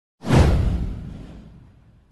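Intro transition whoosh sound effect: a sudden swoosh that sweeps downward in pitch over a deep low rumble, then fades away over about a second and a half.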